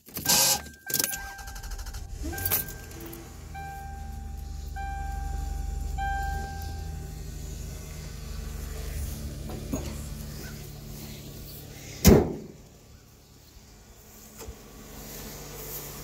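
Toyota Camry idling with a low steady hum while the car's electronic warning chime beeps several times in the first half. About twelve seconds in, a car door slams shut, the loudest sound.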